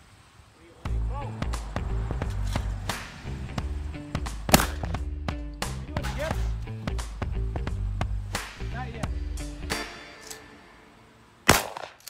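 Background music with a steady beat that starts about a second in and stops about two seconds before the end, with sharp cracks through it, the loudest about four and a half seconds in, and one more crack near the end.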